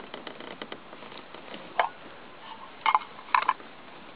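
Small twig fire crackling inside a homemade wood-burning camp stove under a pot, with scattered light ticks and a few louder pops about two and three seconds in.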